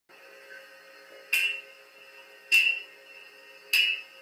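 Three sharp finger snaps, evenly spaced about a second and a bit apart, keeping a slow beat as a count-in to an a cappella arrangement, over a faint steady tone.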